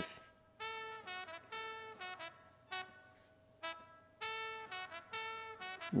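A recorded horn line played back through a mixing-console channel noise gate. It is a string of short brass notes, and the gate cuts the channel to near silence between them, opening on each note and closing when it ends.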